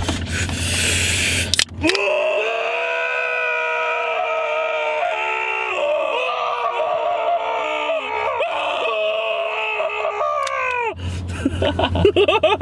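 Men's voices holding one long, loud 'aah' note together for about nine seconds. It slides up as it starts, about two seconds in, and slides down as it ends near the end. Before it there is a short rushing hiss.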